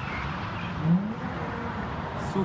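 Car engine revving while its tyres spin in a burnout, over a steady rush of noise, with one louder rising rev about a second in.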